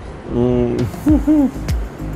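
A man's closed-mouth "mmm" hums of enjoyment while eating a creamy dessert: one steady hum, then two short rising-and-falling "mm-mm" sounds. A background music beat comes in after them.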